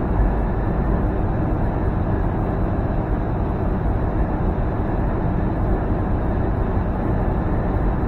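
Steady drone of a semi truck cruising at highway speed, heard from inside the cab: engine and tyre noise.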